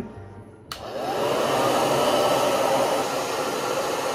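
Soft-bonnet hair dryer switching on just under a second in, its pitch rising briefly as the motor spins up, then blowing steadily through the hose into the hood.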